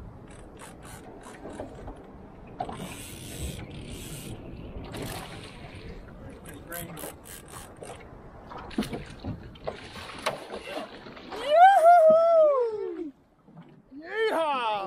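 Fishing reel ratcheting and clicking as it is wound against a fighting fish, a big snapper on a short jigging rod, with scattered handling knocks. Near the end comes a loud whooping shout, the loudest sound.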